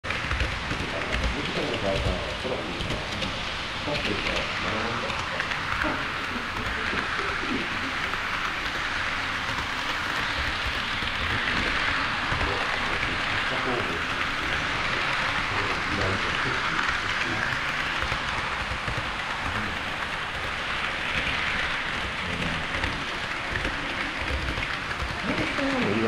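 HO-scale model trains rolling on KATO Unitrack close to the microphone: a steady rushing noise of metal wheels on rail and small motors that swells and eases several times as the cars pass.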